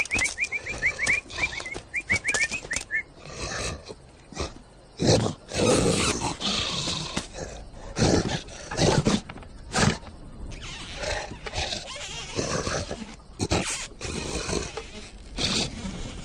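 Cartoon sound effects: a quick run of high chirping calls over the first three seconds, then a string of sudden hits and noisy bursts with animal voices, including a lion's roar.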